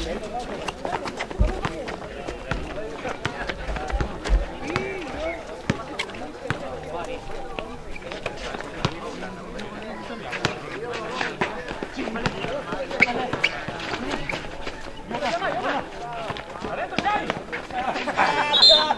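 Outdoor basketball play: a ball bouncing on a concrete court and players' feet running, with sharp knocks scattered throughout over a background of spectators' voices.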